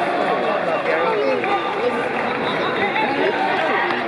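Football stadium crowd chatter: several voices talking and calling out at once, none clearly heard.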